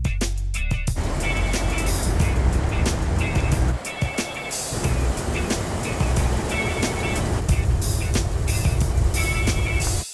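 Background music with a steady beat over a 1956 Continental Mark II's V8 running as the car drives by, engine and tyre noise rushing up about a second in and dipping briefly about four seconds in.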